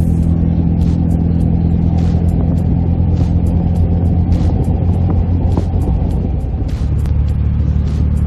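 Daihatsu Copen Xplay's 660 cc turbocharged three-cylinder engine running at a steady cruise, heard from inside the open-topped car together with road and wind noise. The engine note changes about seven seconds in.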